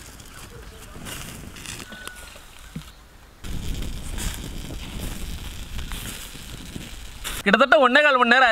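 Low outdoor background noise that gets louder and deeper about three and a half seconds in, with a faint short bird-like whistle early on. Near the end, music with a wavering melody starts.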